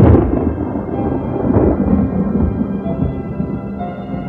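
Dark keyboard intro of a melodic black metal demo: held synth chords with a loud thunderclap sound effect right at the start, rumbling away over the next couple of seconds.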